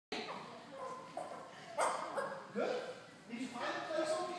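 A person imitating a chicken: a string of about six short clucking calls that bend in pitch.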